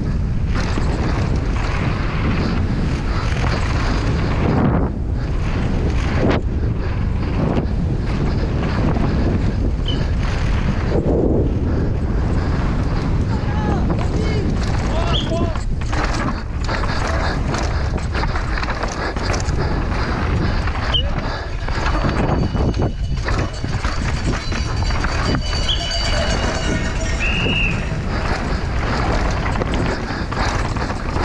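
Wind rushing over an action camera's microphone while a downhill mountain bike runs fast over a rough dirt and rock trail, its tyres and frame rattling steadily. Spectators shout along the course, and a few short high squeaks cut through.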